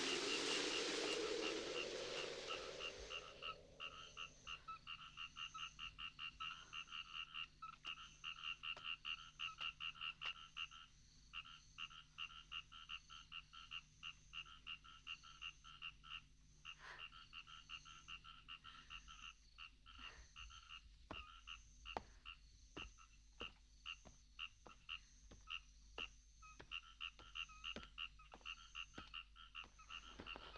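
A faint chorus of small calling animals in the field, rhythmic pulsed calls repeating a few times a second. A rustle of wind through the sorghum fades out in the first few seconds.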